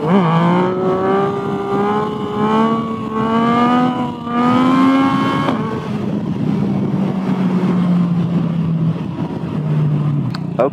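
Yamaha naked motorcycle engine accelerating through the gears: the note climbs, dips briefly at each shift and climbs again. About five and a half seconds in it drops and settles into a steady cruise.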